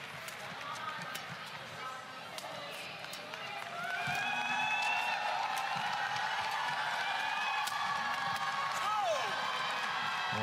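Badminton rally: sharp cracks of rackets hitting the shuttlecock, with shoe squeaks on the court. The sound gets louder about four seconds in, with pitched sliding squeaks.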